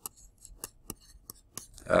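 Plastic stylus tip tapping and scratching on a tablet screen while handwriting, a series of short light clicks, about six in two seconds.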